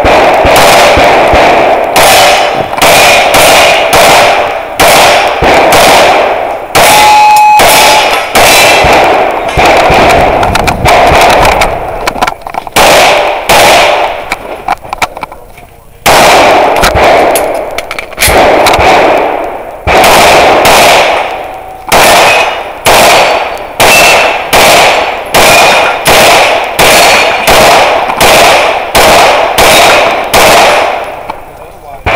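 Rapid semi-automatic pistol fire heard from the shooter's own position, loud, in quick strings of about two to three shots a second. The shots break off for a short lull about halfway through, then resume at the same pace.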